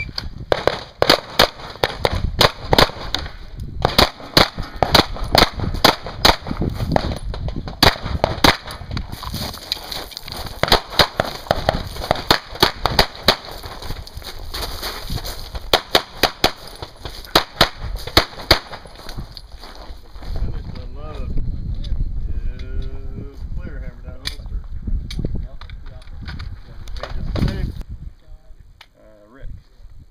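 Rapid handgun fire during a timed practical-shooting stage: quick strings of shots broken by short pauses, for about eighteen seconds, then the shooting stops.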